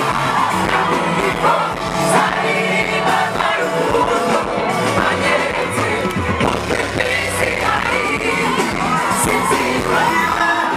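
Live band music with a lead singer amplified through a concert sound system, and a crowd singing and cheering along.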